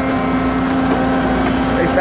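A Weiler P385 asphalt paver and a dump truck running steadily side by side while the raised dump bed unloads asphalt into the paver's hopper. Together they make a constant, even machinery drone with a steady hum.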